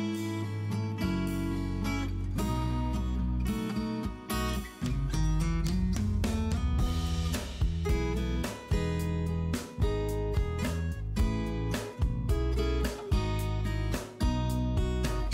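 Background music led by a strummed acoustic guitar, with a steady beat.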